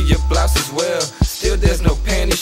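Hip hop track: a beat with deep bass and sharp percussion hits, with rapped vocals over it.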